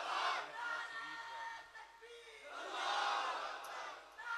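A crowd of men shouting together in two bursts: a short one at the start and a longer one in the second half.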